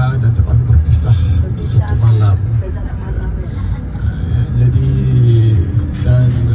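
Steady low rumble of a moving bus's engine and road noise inside the cabin, under a man's voice through the bus's microphone and speakers.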